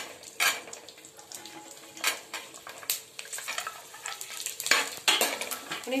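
A metal spoon scraping and knocking against a non-stick frying pan as green chillies, peanuts and garlic are stirred in a little hot oil, with a light sizzle of frying. The knocks come in irregular clusters, busiest around two seconds in and again near the end.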